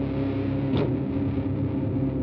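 Instrumental music from amp-modelled electric guitar and bass, with sustained notes ringing and one sharp hit a little under a second in.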